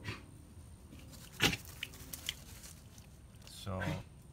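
Brief handling noises close to the microphone: a sharp scuff about a second and a half in and a few light clicks. A short murmur of a man's voice follows near the end.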